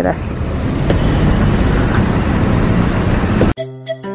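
Steady road-traffic and car engine noise with a low rumble, cut off abruptly about three and a half seconds in by background music with a flute melody.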